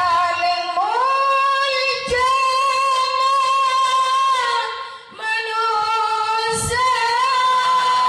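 A woman singing unaccompanied into a handheld microphone, holding long steady notes in two phrases, with a short break for breath about five seconds in.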